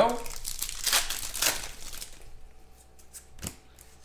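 Foil trading-card pack wrapper crinkling and rustling in the hands for about two seconds, then quieter handling with a single light tap near the end.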